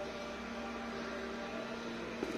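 A steady low hum with faint hiss, unchanging throughout.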